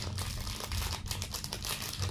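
A food wrapper being crinkled and handled in a run of irregular crackles.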